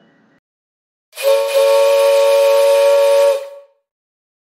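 A train horn sounding one long blast of about two seconds, two close tones with a hissing edge, starting about a second in and fading out near the end.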